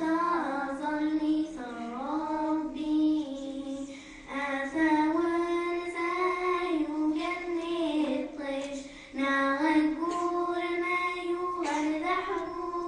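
Two young girls singing a verse of a Kabyle song together, in long held phrases with short breaks for breath about four and nine seconds in.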